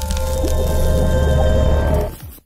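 Music sting: a held chord with several steady tones over a strong deep bass drone, starting to die away at the very end.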